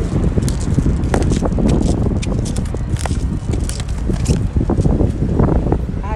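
Wind buffeting a phone's microphone as it moves along a sidewalk on a rental electric scooter, a steady low rumble with many irregular clicks and knocks from handling and rolling over the pavement.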